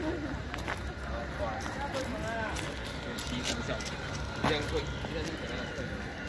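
Faint voices of other people talking in the background outdoors, with a few irregular footsteps on gravel.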